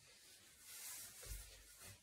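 Near silence with faint rubbing and shuffling from a dancer's feet and clothing, and one soft low thump just past the middle.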